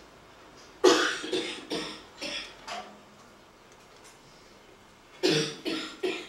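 A person coughing: a run of about five coughs starting about a second in, each weaker than the last, then two more near the end.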